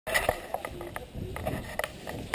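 Handling noise from a GoPro in its waterproof housing: a string of irregular sharp clicks and knocks, a few every second, loudest at the very start, over a low rumble as the camera is carried.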